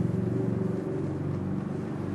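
A steady low hum that slowly fades.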